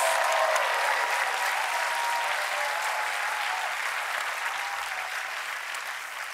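Studio audience applauding, the applause slowly dying down.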